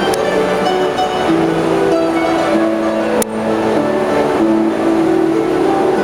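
Two harps played together, plucked notes ringing over one another in a slow, steady melody. A sharp click a little past halfway briefly cuts across the music.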